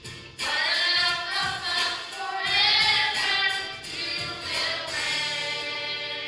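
Small children's choir singing a gospel song; the voices break off briefly right at the start, come back in, and settle into a held note near the end.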